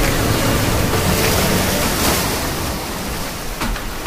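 Sea surf: small waves breaking and their wash rushing over wet sand at the water's edge. It swells about a second or two in and eases a little toward the end.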